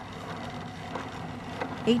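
Steady wind and road noise from a vehicle moving alongside a racing wheelchair on asphalt, even and without distinct events.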